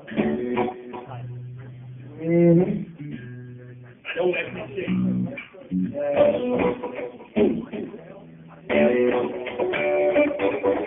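Electric guitar and bass guitar playing loose notes and chords through amplifiers, with long held low bass notes; the playing turns louder and fuller about nine seconds in.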